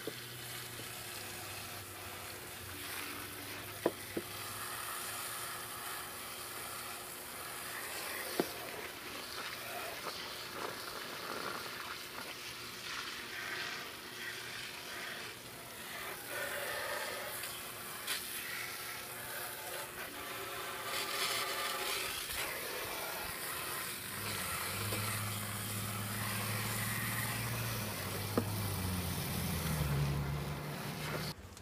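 Garden hose spray nozzle jetting water against the underside of a lawn mower deck, a steady hiss with a few sharp clicks. For the last several seconds a low droning hum runs underneath it and drops slightly in pitch near the end.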